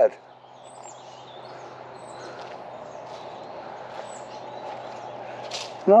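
Outdoor ambience: a steady background hiss of environmental noise, with a few faint, brief bird chirps now and then.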